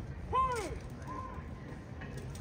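A spectator's shout: one loud rise-and-fall call about a third of a second in, then a shorter, higher call about a second in, over a low murmur of the ballpark crowd.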